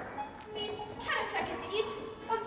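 Women's voices speaking and calling out on stage over quiet musical accompaniment, right after a sung chord cuts off.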